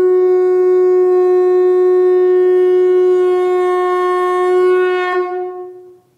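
One long, steady blown note from a horn-like wind instrument, held at a single pitch and fading out near the end.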